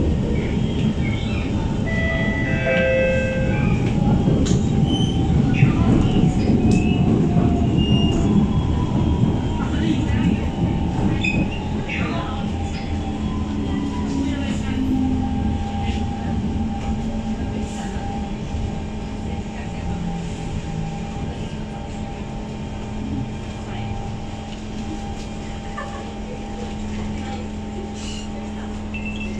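Siemens C651 metro train running and slowing into a station, heard from inside the car: wheel-on-rail rumble with whining tones from the traction equipment. It grows steadily quieter as the train comes to a stop at the platform.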